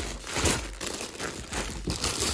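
Clear plastic poly bags crinkling and rustling as packaged socks are handled and pulled out of a cardboard box, loudest about half a second in.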